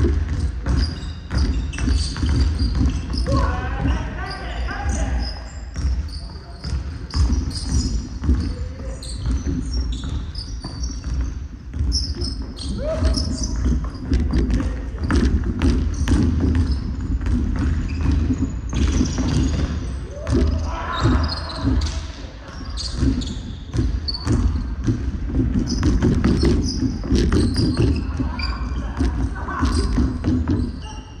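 Basketball bouncing on a hardwood court, with players running and calling out to each other, echoing in a large hall.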